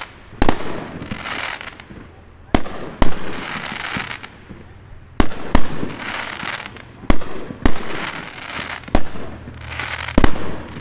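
Aerial fireworks bursting: about eight sharp bangs in ten seconds, several coming in quick pairs, with a rushing hiss from the shells and stars between the bangs.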